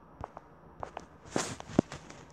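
Handling noise from a plush teddy bear being moved up against the webcam microphone: a few soft knocks and clicks, a brushing rustle midway, and a sharp thump near the end.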